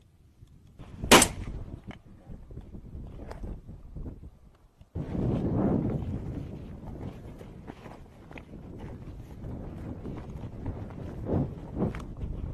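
A single shotgun shot about a second in. From about five seconds in comes a steady rustle of footsteps and brushing through dry scrub as the hunter climbs the slope.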